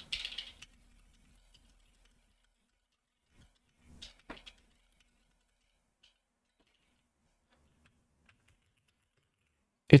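Faint, scattered key clicks from typing on a split Corne mechanical keyboard with low-profile Kailh Choc switches, largely muted by a microphone noise suppressor, with a slightly louder cluster of clicks about four seconds in.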